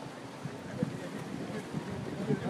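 Outdoor street noise: a steady hiss with wind buffeting the microphone and faint voices in the background.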